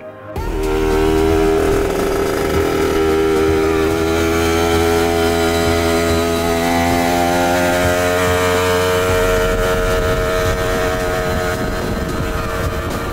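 1974 Simson Schwalbe moped's small two-stroke engine running as it rides, starting just after the cut and holding steady, its note rising slowly.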